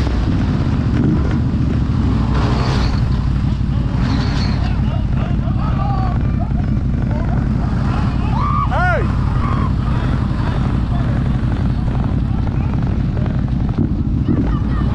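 Side-by-side UTV engine running steadily under load as the machine churns through a deep mud hole, with people shouting and whooping over it near the middle.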